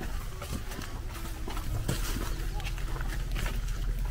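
Footsteps on a grassy dirt path, an irregular series of soft steps, over a low outdoor rumble.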